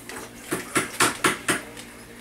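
Dishes and mugs clinking on a kitchen counter: about five sharp clinks a quarter second apart.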